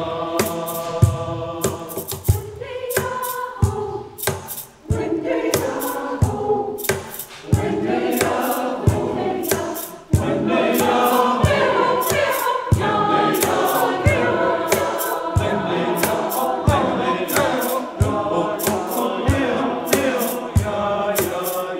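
Church choir singing in parts over a steady beat of sharp percussive hits, with a brief break between phrases about ten seconds in.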